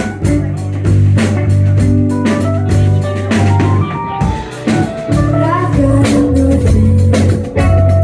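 Live rock band playing: a steady drum-kit beat under electric bass, electric guitar and keyboard.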